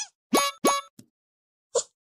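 Two quick cartoon plop sound effects about a third of a second apart, each a short upward-sweeping bloop. They are followed by a tiny click and one more brief blip near the end.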